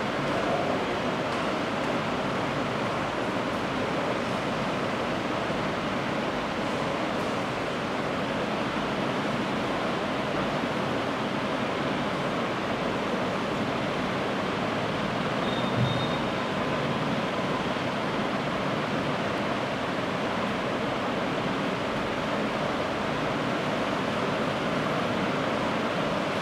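Steady, even hiss of background noise, with one soft knock about sixteen seconds in.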